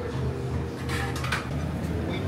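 Metal pans and cooking utensils clattering, a quick run of clinks and knocks about a second in, over a steady low hum.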